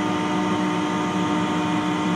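Steady electrical-mechanical hum of a small submarine's onboard machinery heard from inside its cabin, one constant low tone with fainter higher tones over a whirring noise.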